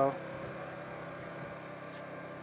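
Electric motors of the WEEDINATOR autonomous tractor running steadily as it drives, a sound made of several steady tones held at one pitch.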